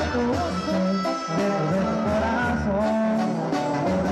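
Live Mexican banda music: brass with tuba and drums, steady and loud, with a singer's wavering melody over it.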